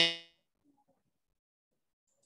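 The last syllable of a man's word over a video call, its tones ringing on briefly as they fade, then near silence as the call audio drops out on a poor wi-fi connection.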